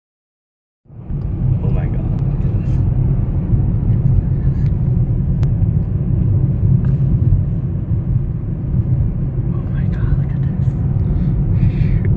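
Car cabin road noise while driving: a steady low rumble of tyres and engine that starts about a second in.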